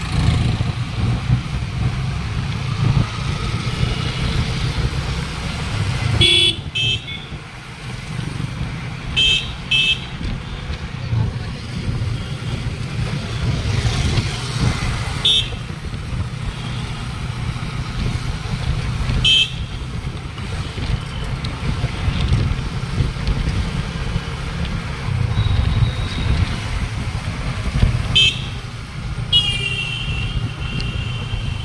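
Motorcycle riding through traffic: a steady low engine and wind rumble, with short vehicle horn toots several times, some in quick pairs, and a longer horn blast near the end.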